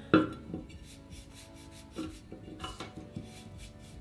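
A paint brush dabbing and scrubbing dry chalk paint onto an urn, with a sharp knock just after the start and a few lighter taps.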